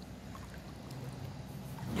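Swimming-pool water lapping and swishing quietly around a person standing in it.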